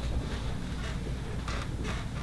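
Steady low room hum picked up by the microphone, with a few brief rustling noises in the second half.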